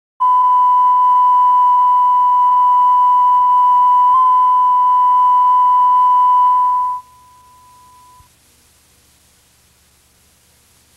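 A steady line-up test tone played with colour bars from a VHS tape, with a brief glitch about four seconds in. It drops sharply at about seven seconds, carries on faintly for about another second, and then leaves only faint tape hiss and hum.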